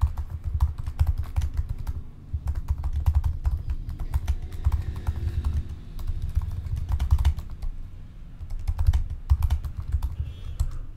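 Typing on a computer keyboard: a rapid, steady stream of keystroke clicks with a couple of brief pauses, as a line of text is written.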